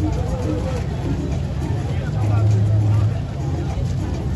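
Street crowd noise from a marching group: scattered voices calling out over a dense low rumble. About two seconds in, a low steady tone sounds for about a second and is the loudest thing heard.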